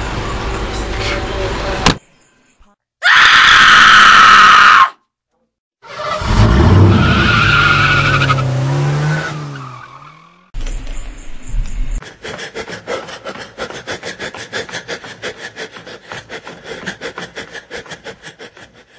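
A car sound-effect sequence cut together with brief silences between the clips. A loud tyre screech comes about three seconds in. A car then drives past, its engine pitch falling, and a steady rhythmic pulsing follows.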